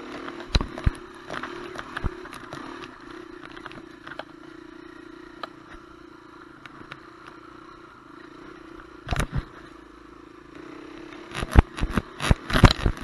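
Dirt bike engine running at a steady pace under light throttle, with knocks and clatter as the bike bounces over the trail. A couple of louder knocks come about nine seconds in, and a quick run of them near the end.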